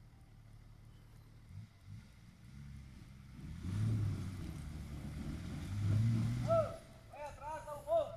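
Range Rover P38's engine revving under load in two surges as it crawls over rocks, then easing off. Near the end, short shouts from onlookers.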